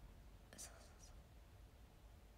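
Near silence: room tone with faint whispering, two soft hisses about half a second and a second in.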